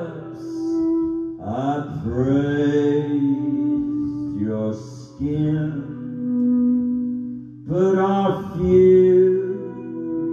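Slow, droning live rock music: a low male voice sings long, drawn-out, chant-like notes over sustained guitar and keyboard tones. The voice swells in twice, about a second and a half in and again near the end, with a held drone between.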